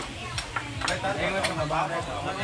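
Meat cleaver chopping a whole crisp-skinned roast pig: about three sharp chops roughly half a second apart, with crunching of the skin in between. Voices chat in the background.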